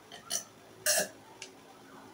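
A person drinking from a horn cup, then a loud burp about a second in.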